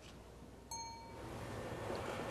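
A single short bell-like ding about two-thirds of a second in, ringing at a few high pitches and fading within half a second. It is followed by a rising hiss of room noise.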